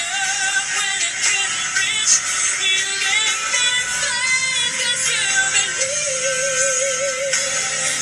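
A woman's voice singing a slow pop ballad over backing music, with a long held note with vibrato about six seconds in.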